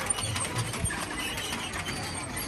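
Metal Buddhist prayer wheels turning on their spindles as they are spun by hand, giving a continuous irregular clattering of many small clicks.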